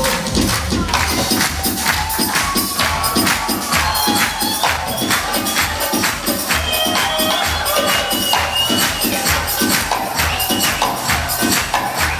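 Turkish music ensemble playing an instrumental passage: a melody line over a steady drum beat of about four strokes a second, with the choir clapping along in time.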